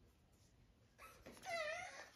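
A six-week-old puppy giving a short, high-pitched whine that wavers in pitch, about halfway through.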